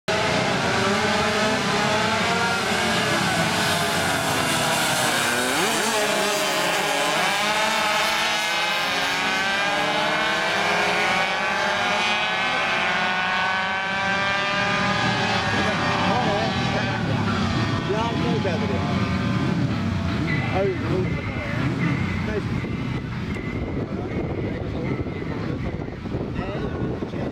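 A pack of small classic racing motorcycles accelerating away together, their engines revving with many overlapping rising and falling pitches. The sound thins out and drops in level over the last few seconds as the bikes ride off.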